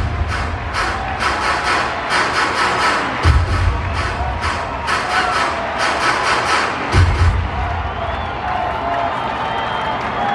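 Ballpark crowd cheering over loud stadium music with a rapid clapping beat and a deep bass thump about every three and a half seconds. The beat drops out near the end, leaving crowd noise with scattered shouts.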